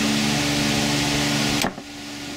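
Steady hum and rushing air of a running fan, which cuts off suddenly near the end.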